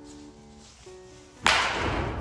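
A baseball bat swung hard through the air in a practice swing, giving one sharp whoosh about one and a half seconds in, over background music.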